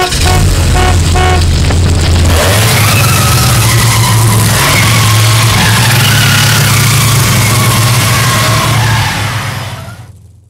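Car engine sound effect running loud and steady, its low note stepping up in pitch about two and a half seconds in as if shifting under acceleration, with a wavering high squeal over it. A few short beeps come in the first second and a half, and the whole sound fades out near the end.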